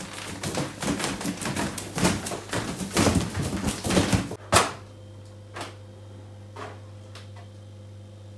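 Latex balloons and their curling ribbons rubbing and bumping against the phone up close: a rapid run of rustling clicks for about four and a half seconds, ending in a sharp knock. After that only a steady low hum and a few faint clicks.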